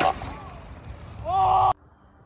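A person's voice: brief exclamations, then a loud drawn-out shout about a second and a quarter in that cuts off suddenly, over a steady low rumble.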